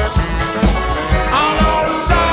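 A live band playing an up-tempo swing number, the drum kit and upright bass keeping a steady beat of about two strong hits a second under a held melody.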